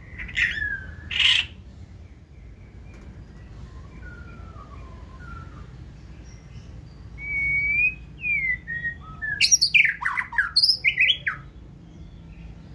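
Caged white-rumped shama singing its wild-type song: two loud notes just after the start, a few soft sliding whistles in the middle, then a loud, fast run of varied whistled and harsh notes over the last few seconds.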